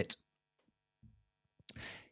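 Near silence with a faint electrical hum, then, near the end, a short breath drawn in before speaking.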